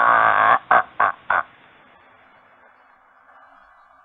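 A man's voice holding a long, drawn-out sound that falls slowly in pitch and stops about half a second in, followed by three short vocal bursts. Then only the faint hiss of an old, narrow-band radio recording.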